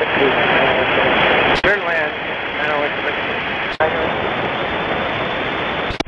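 Aviation VHF radio receiving air traffic control: a loud, steady hiss of static with a weak, unreadable voice transmission faintly under it. The hiss is broken by sharp clicks about a second and a half in and again near four seconds, and it cuts off suddenly just before the end.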